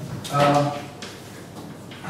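A man's voice speaking briefly, a word or two, about half a second in, then low room sound.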